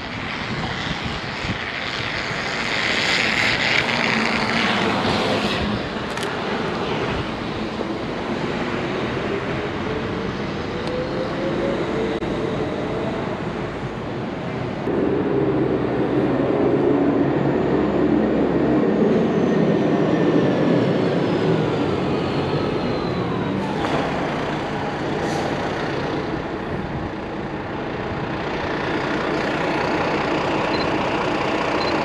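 City street traffic: vehicles running past steadily, with one engine note rising about ten seconds in and a high whine falling slowly in pitch later on.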